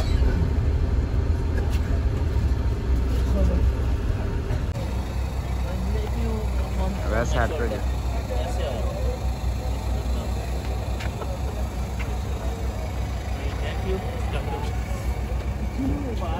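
Steady low rumble of intercity coach engines and road noise, loudest in the first few seconds, with brief voices about halfway through and near the end.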